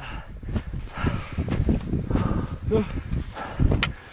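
Wind rumbling on the microphone, with a climber's footsteps and gear rustling as he walks up the snowy summit ridge; a voice says "Go" near the end.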